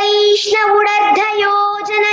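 A young girl singing a Telugu padyam, a classical verse sung to a melody, holding one long steady note with small turns in pitch.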